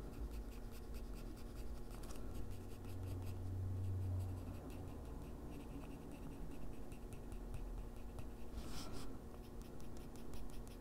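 Coloured pencil scratching on toned gray paper in quick, short repeated strokes, shading fur, with one louder stroke near the end.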